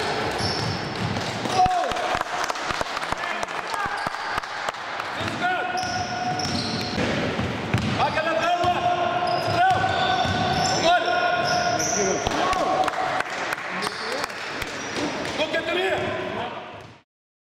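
Basketball dribbling and bouncing on a hardwood gym floor, with many short knocks, while sneakers squeak and players call out on the court.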